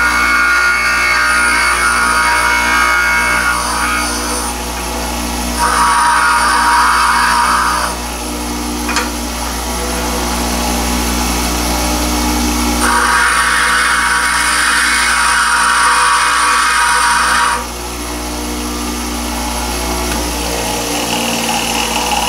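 Bench grinder running with a steady motor hum while a lathe tool bit is pressed against the wheel in three grinding passes: one at the start, a shorter one about six seconds in, and a longer one of about five seconds near the middle. A short click falls between the second and third passes.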